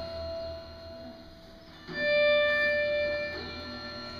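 Ambient improvised rock-band music of sustained, droning instrument notes: one held note fades away, and a new held note swells in about two seconds in.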